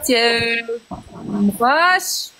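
A woman's voice making drawn-out, sing-song sounds with no clear words: one held note at the start, then short bits, then a sound rising in pitch near the end.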